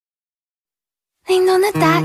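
Silence between tracks, then a Chinese pop song starts suddenly a little over a second in, with a singing voice over held instrumental notes.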